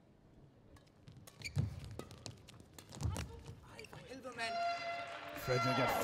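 Badminton rally: sharp racket strikes on the shuttlecock, heavy footfalls as players lunge, and a drawn-out squeak of court shoes on the mat near the end, with a commentator's voice coming in at the close.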